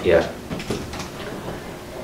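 A man reading aloud in Hmong ends a word in the first moment, then pauses. The rest is low room noise with a faint, short handling sound just under a second in.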